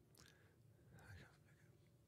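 Near silence: room tone, with a couple of very faint soft sounds.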